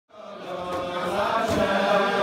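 A group of voices singing a slow melody together in unison, fading in from silence at the start.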